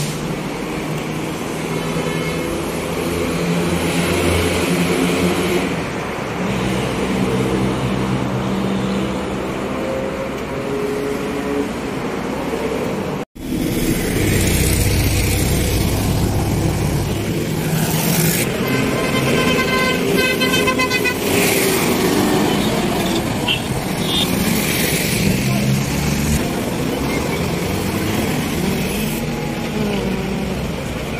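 Busy road traffic: motor vehicles running past, with a vehicle horn sounding for about three seconds in the second half and a couple of shorter toots soon after. Voices of people are mixed into the street noise.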